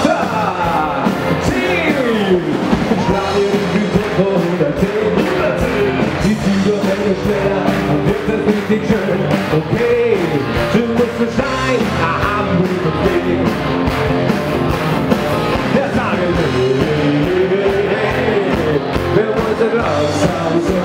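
Live Bavarian party band playing loud music with singing over a steady beat, the pitch of the lead lines sliding up and down.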